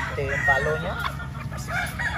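Gamefowl chickens calling and clucking, with a rooster crowing, in several short pitched calls.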